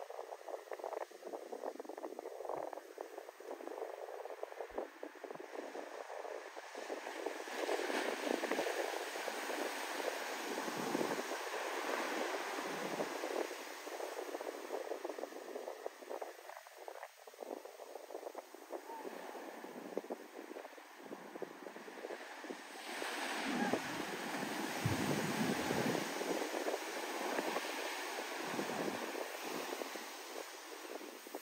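Shorebreak surf: a steady rush of breaking waves and whitewater washing up the sand, swelling louder about eight seconds in and again a little past twenty-three seconds.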